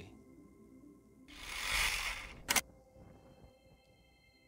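Soft background music with a whoosh transition effect about a second and a half in: a noise that swells and fades over about a second, ending in a short sharp click.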